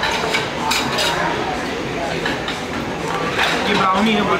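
Metal fork and spoon clinking and scraping on a ceramic plate and bowl: a few sharp clinks in the first second and more near the end, over background chatter.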